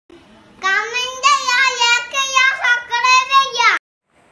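A young boy singing a short high-pitched phrase. It starts about half a second in and is cut off abruptly just before the end.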